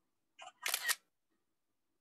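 iPad screenshot sound: a short two-part camera-shutter click about half a second in.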